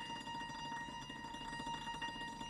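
Quiet background music: a few sustained high notes held steadily, in a softer passage between fuller chords.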